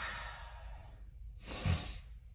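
A man breathing out: a soft breath at first, then a louder sigh-like exhale with a short low hum in it near the end.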